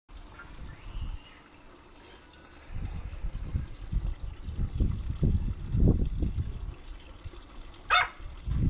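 Uneven low rumbling noise for most of the clip, then a small dog's single high, rising yap right at the end.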